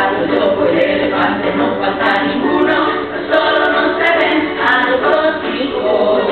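A teacher and a class of young children singing a song together, unaccompanied.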